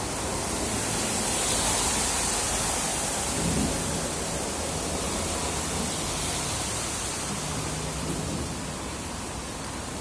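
Steady rushing noise with no distinct events, spread evenly from low to high, with a faint low hum beneath.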